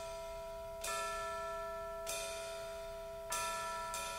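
Bells struck slowly, three strokes about a second and a quarter apart, each ringing on into the next, over a steady low hum.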